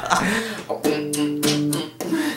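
A guitar strummed a few times about a second in, then a chord left ringing for about a second before it is cut off short.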